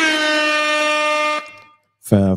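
An air horn sounding one long, steady blast that stops about a second and a half in.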